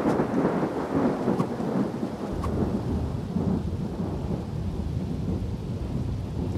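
Thunder rumbling over rain, loudest as it opens and settling into a steadier low rumble after about two seconds.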